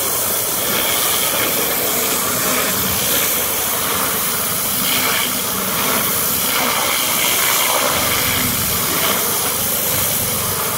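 High-pressure washer lance blasting a jet of water onto wet paving tiles, a loud, steady hiss of water striking the surface. A little more low rumble comes in during the last couple of seconds as the spray sweeps at a shallower angle.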